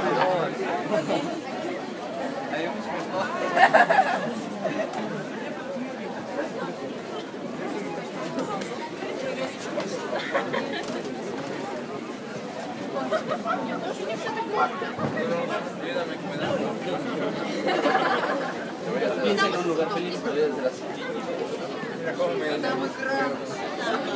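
Crowd chatter: many people talking at once, with one nearby voice briefly louder about four seconds in.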